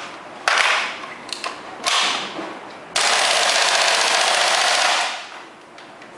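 WE G39C gas blowback airsoft rifle firing: two short bursts, then a sustained full-auto burst of about two seconds that ends about a second before the end.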